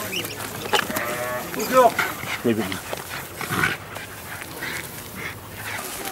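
Sheep bleating several times in short calls, with a dog close by.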